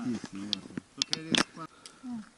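Indistinct talk and chatter among a group of hikers, with a few sharp clicks about a second in.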